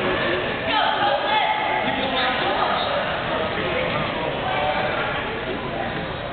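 Indistinct overlapping voices of spectators and officials in a gymnasium, a steady murmur of chatter.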